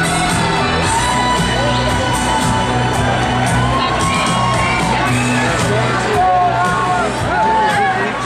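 Guggenmusik band of brass and drums playing loudly, with held brass notes. From about halfway the crowd cheers and whoops over the music.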